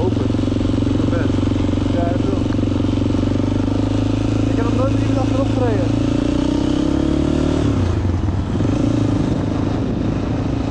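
Honda XR400 single-cylinder four-stroke motorcycle engine running under way, its note rising gently for a few seconds and then dropping suddenly about three-quarters of the way through, settling at a lower pitch.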